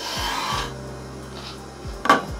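A square-bladed kitchen knife slicing through an eggplant on a wooden cutting board: one slicing stroke lasting about half a second at the start, over background music.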